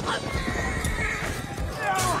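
Horses whinnying and galloping in a cavalry charge, with several high cries that bend up and down and one falling near the end, over low hoofbeat rumble and men shouting.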